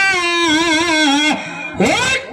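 A singing voice in a dollina pada folk song, holding a long wavering note that steps down in pitch. It breaks off about one and a half seconds in, with a quick rising slide near the end.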